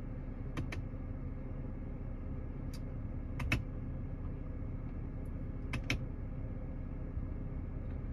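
Steady low hum of a BMW E90 3 Series idling, heard from inside the cabin, with several light clicks, some in quick pairs, from the iDrive controller knob as the menus are scrolled and selected.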